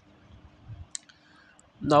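A short pause in a man's speech, with a single sharp click about a second in and a fainter tick a little later, over a faint steady hum.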